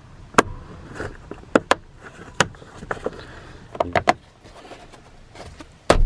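Plastic seat-track bolt covers being pressed back into place by hand: a scattered series of short, sharp plastic clicks and taps, the loudest one near the end.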